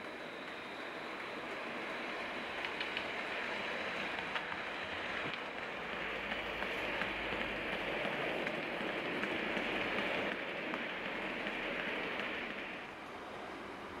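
OO gauge model train, a Class 66 and its cement tank wagons, rolling along the track with a steady rumble and faint wheel clicks. It grows louder as the wagons pass close and falls away shortly before the end.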